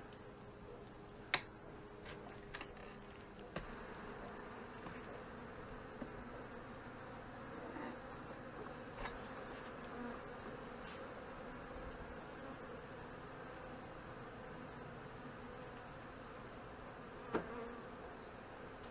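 Honey bees buzzing steadily over an open hive, with a few sharp clicks, the loudest about a second in and another near the end, as the metal queen excluder is pried up and lifted off the top box.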